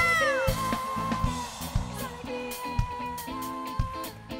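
Live carimbó band music: a drum kit keeps a steady beat about twice a second, with a swooping note at the start and then a long high note held over the band.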